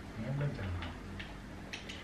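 A few light, irregularly spaced clicks, with a brief low voiced hum near the start.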